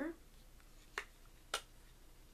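Two sharp plastic clicks about half a second apart from a small pink plastic compact makeup mirror being snapped shut and handled.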